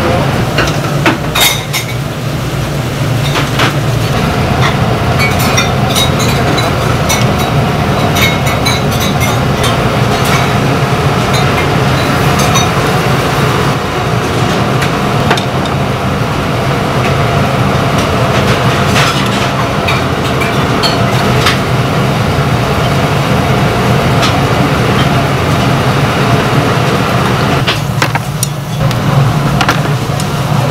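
A row of commercial gas burners running under earthenware soup bowls, making a loud, steady rushing noise with a low hum underneath. Scattered clinks of dishes and utensils come through it.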